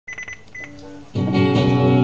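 A few short clicks and faint beeps, then guitar music starts suddenly about a second in with a sustained chord.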